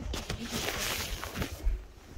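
Rustling of fabric rubbing against a handheld phone's microphone as it is moved about, a dense scratchy noise for about a second and a half, then a couple of dull thumps near the end.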